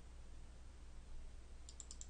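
Quiet room tone, then a quick cluster of faint computer mouse clicks near the end as a folder is double-clicked open.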